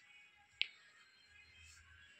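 A single short, sharp click about half a second in, over near quiet.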